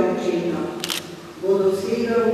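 A woman reading aloud into a microphone, with a short sharp click a little under a second in.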